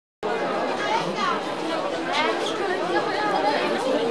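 Crowd chatter in a busy market: many voices talking at once and overlapping, starting a moment in.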